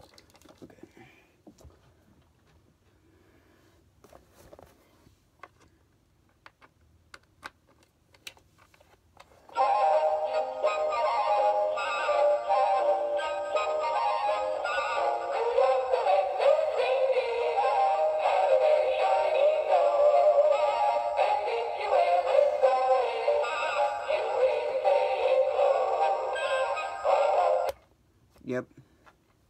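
A battery-powered animated Christmas figure playing a sung Christmas song through its small built-in speaker, starting about a third of the way in and cutting off suddenly near the end. Before the song there are only a few faint clicks from handling the figures.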